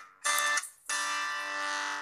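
Acoustic guitar playing the song's intro chords: a chord struck about a quarter second in, cut short, then another just under a second in that rings on and fades.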